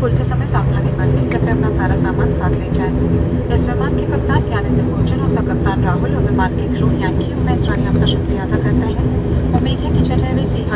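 Cabin noise of an ATR 72-500 turboprop rolling along the runway after landing: a steady propeller and engine drone with a low, even hum. A cabin public-address announcement in Hindi plays over it.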